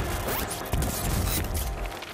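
Television title sting: scratchy, glitchy noise effects over music, with a rising sweep about half a second in, as a programme logo is revealed.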